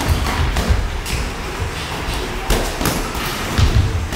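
Irregular thuds of boxing sparring: gloved punches landing and the boxers' feet stepping on the ring canvas, half a dozen sharp knocks over a few seconds.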